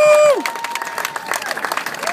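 Small outdoor audience clapping and cheering at the end of a song, with a short rising-and-falling whoop at the start and a steady patter of hand claps after it.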